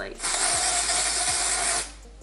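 An aerosol can of Batiste Hint of Colour tinted dry shampoo spraying onto the scalp in one steady hiss lasting about a second and a half, cutting off sharply near the end.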